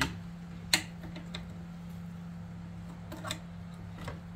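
A few light metallic clicks as side cutters grip and bend the end of a disc brake pad retaining pin at the caliper. The loudest click comes about a second in and the others are fainter, over a steady low hum.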